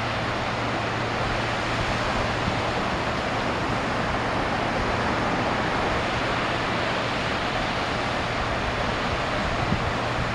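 Ocean surf heard from the shore as a steady wash of noise, with a low steady hum underneath.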